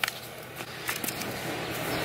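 A quiet pause: low, steady background noise with a few faint, short clicks.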